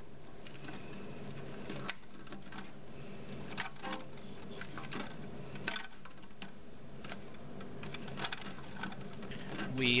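Irregular clicks and small knocks of plastic toilet-tank parts being handled, as a gloved hand pushes a washer down over the tube of a dual-flush flapper assembly, over a steady low hum.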